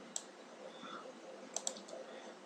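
Computer mouse clicks over faint room noise: one click near the start, then a quick pair about a second and a half in and a lighter one just after.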